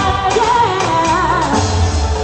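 A woman singing live with a band of keyboard, drums and bass guitar, her held notes wavering.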